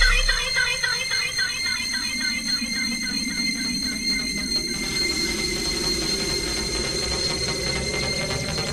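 Beatless breakdown in a donk dance-music mix: a heavy bass hit dies away in the first half second, leaving high, steady synth tones and a slowly falling sweep, with the top end brightening around the middle.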